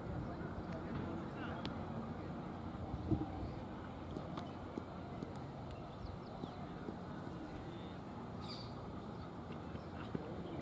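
Open-air ground ambience: a steady low rumble of background noise with faint, distant voices, and one soft thump about three seconds in.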